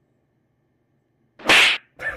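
Near silence, then about a second and a half in a single short, sharp swish of noise lasting under half a second, strongest in the high range.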